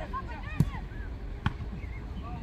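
Football kicked twice, two sharp thuds about a second apart, the first the louder.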